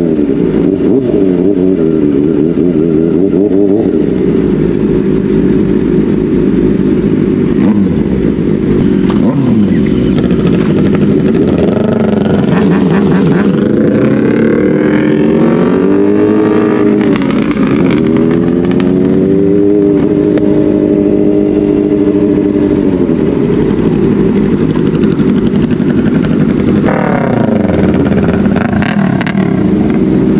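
Tuned 2023 Kawasaki Ninja ZX-4RR's inline-four engine running loud, its revs rising and falling several times, holding steady for several seconds past the middle, then dropping and climbing again near the end.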